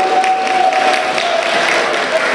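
Audience applauding, many overlapping claps, with a single steady held tone underneath that fades out about one and a half seconds in.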